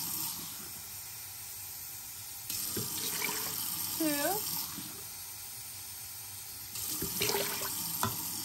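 Water being poured into a pot of dry yellow split peas, one measured cup at a time: a short stretch of pouring at the start, another starting about two and a half seconds in, and a third near the end, with pauses between.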